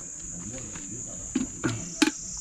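Steady, high-pitched shrilling of an insect chorus, with a couple of brief, faint voice sounds near the end.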